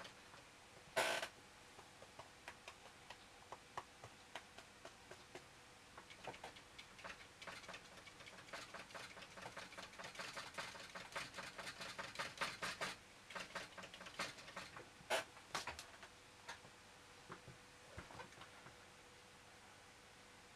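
A dry, scuffed-up flat watercolour brush, its hairs splayed, dabbing lightly and repeatedly on paper to stipple leaves: faint quick taps, several a second, thickest through the middle. One louder scratch comes about a second in.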